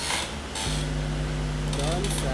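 A steady low electrical hum, with a few short rustling clicks: one at the start, another about half a second in, and a third near the end.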